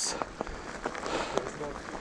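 Mountain-bike tyres rolling over a path covered in dry fallen leaves, a soft rustling crunch with a few small clicks and rattles from the bike.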